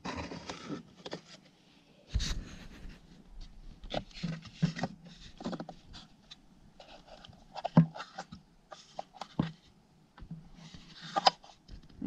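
Hands handling a 1:12-scale wooden dollhouse dresser and working its tiny drawers: scattered light wooden clicks, knocks and scrapes, the loudest a knock about two seconds in.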